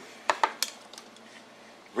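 A metal bowl with a fork in it set down on a wooden cutting board: two or three short clinks of the fork against the bowl in the first second, then quiet.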